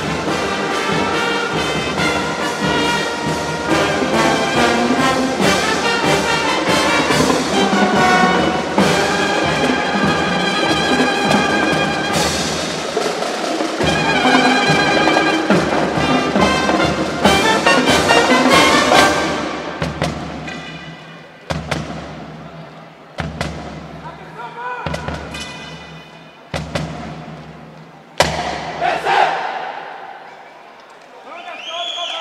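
Marching band with brass and percussion playing loud and full. About two-thirds of the way through, the steady playing stops and gives way to a few short, separate hits with pauses between them.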